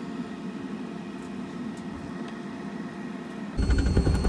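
Steady machine hum with a few held tones. About three and a half seconds in, it switches suddenly to a much louder, deep roar: the waste-oil radiant tube burner firing, with its combustion blower.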